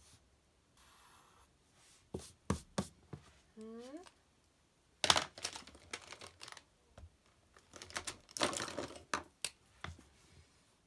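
Irregular sharp taps and clicks with rustling, from objects being handled on a desk. They come in clusters about two seconds in, around five seconds in and again near the end, with a short rising squeak about three and a half seconds in.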